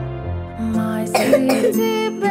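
Slow backing music with a cough from an animated character about a second in.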